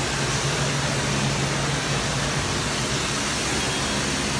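Steady machinery noise on a dry cleaning plant floor: an even hiss with a constant low drone.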